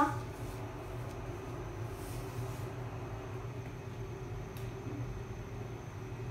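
Steady low hum of kitchen room tone, with a few faint light clicks.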